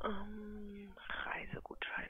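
A person's voice over a telephone line: a hum held on one pitch for about a second, then breathy, whispery sounds.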